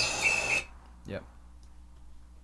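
Foley texture sample auditioned in the DAW's browser: loud noise with a high whistling tone that dips briefly several times, cutting off suddenly about half a second in.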